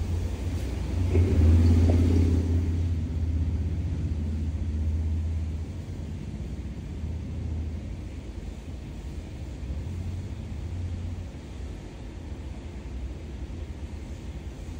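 A low, steady rumble. It is loudest about two seconds in and then slowly fades away.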